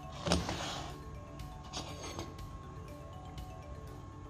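Background music over handling noise from a busbar machine's cutting station: a short scrape just after the start and a couple more around two seconds in, as a hold-down clamp is loosened and the copper busbar is slid out.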